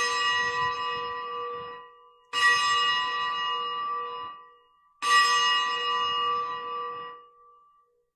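Altar bells rung three times, each ring sounding for about two seconds before fading, at the elevation of the chalice after the consecration.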